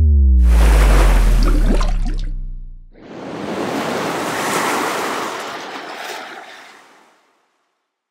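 Designed logo-sting sound effects: a loud, deep boom with a falling tone, then a rushing water splash that swells and fades out by about seven seconds in.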